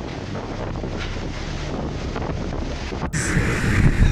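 Cyclone-force wind blowing hard and buffeting the phone's microphone in a steady rough rumble. About three seconds in, the audio cuts abruptly to a louder stretch of gusting wind.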